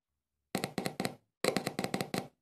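Small speaker crackling with quick clicks and pops as its wire is scratched against the terminal of a 6 V sealed lead-acid battery. The clicks come in two bursts, a few at about half a second in and a faster run from about a second and a half in.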